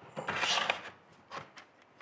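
Wooden block sliding and scraping across the CNC's wooden spoil board for most of a second, then a short tap about a second later.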